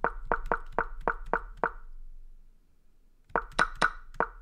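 Piece-move sound effect of an online chess board, clicking in quick succession, about four or five a second, as a game is stepped through move by move. It stops for about a second and a half in the middle, then resumes.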